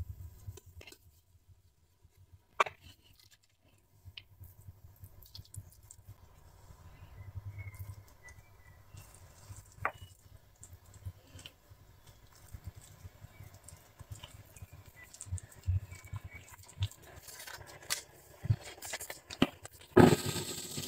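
Faint, sparse handling sounds of hands shaping bao dough and pressing it around a meat, vegetable and egg filling, with a single sharp click about two and a half seconds in.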